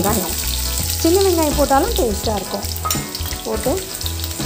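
Chopped onions tipped into hot oil in a frying pan, sizzling steadily as they start to fry.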